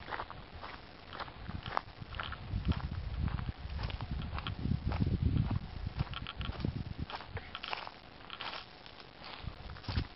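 Footsteps of a person walking along a dirt and grass trail in flip-flops: an uneven run of light slaps and crunches, with a dull rumble about four to six seconds in.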